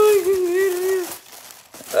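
Tissue paper crinkling as it is pulled apart inside a gift box. Over the first second a woman holds one long, level vocal note. The crinkling goes on more quietly after it.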